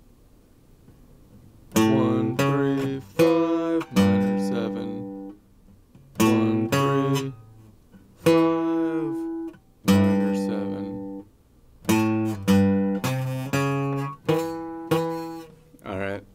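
Acoustic guitar picked as single notes: an arpeggio of root, third, fifth and minor seventh on A, played in about four short runs with brief pauses between them, starting about two seconds in.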